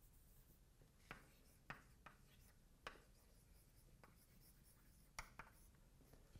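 Chalk writing on a blackboard: faint, irregular taps and short scratches, about seven of them, as a word is written.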